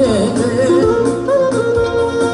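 Live Albanian wedding music: a clarinet playing an ornamented, bending melody over a keyboard accompaniment with a beat.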